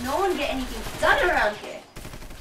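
A woman's voice making wordless, strained sounds that rise and fall in pitch while she struggles against rope bonds, louder about a second in.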